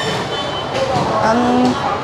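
Busy market-hall ambience: a steady wash of background noise with a vehicle-like hum under it, and a short spoken "à" a little over a second in.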